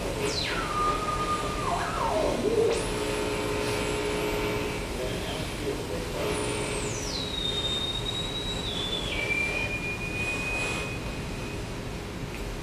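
Live experimental electronic improvisation of processed radio and field recordings: a single whistling tone sweeps down from very high to a mid pitch and steps lower, leaps back up to a very high whistle about three seconds in, then steps down in stages over a steady noisy drone.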